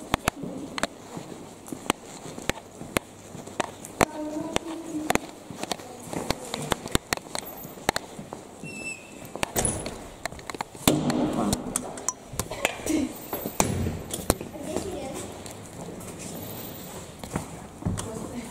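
Footsteps on a hard tiled floor with many irregular sharp clicks and knocks, and people talking in the background, louder about two-thirds of the way in.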